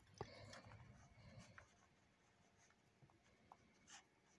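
Near silence: faint rustling handling noise in the first second or so, with a few soft clicks, the last one near the end.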